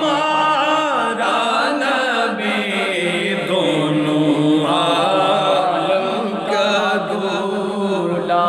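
A man's voice chanting an Urdu naat unaccompanied, in long held and ornamented melodic lines.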